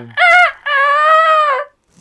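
A person imitating a rooster's crow, 'ku-ka-re-ku': a short two-note call, then one long high arching note that ends abruptly.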